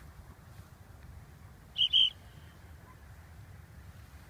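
Two short, loud, high whistles about two seconds in, the second slightly longer, over a steady low rumble of wind.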